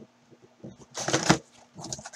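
Cardboard and wrapper rustling as a trading-card box is opened by hand and its packs are pulled out, in two bursts: one about a second in and a shorter one near the end.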